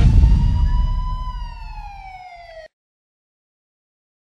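A single siren wail that rises a little and then slides down in pitch over a fading low rumble, cutting off abruptly about two and a half seconds in.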